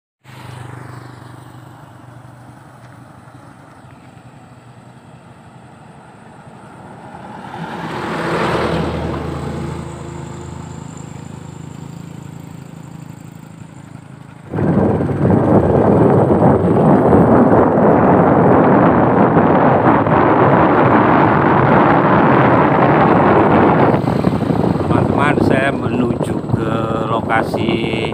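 A low engine hum, then a passing motor vehicle whose sound swells and fades about eight seconds in. About halfway through, a loud steady rushing noise starts suddenly and runs for about ten seconds, with a few clicks near the end.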